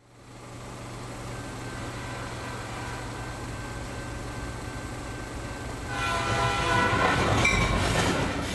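A train running with a steady rumble that fades in at the start, then its horn blowing a sustained chord from about six seconds in, growing louder.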